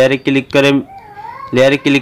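A person's voice talking, broken by a short pause about a second in, during which a faint high sound glides up and down.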